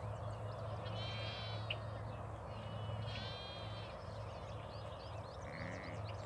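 Lamb bleating twice, short quavering calls about a second in and again around three seconds in, over a steady low background noise.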